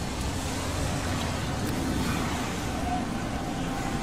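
A steady, even rumble of noise like distant road traffic, with no distinct events.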